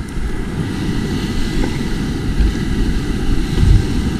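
Wind rumbling on the microphone over the wash of breaking surf.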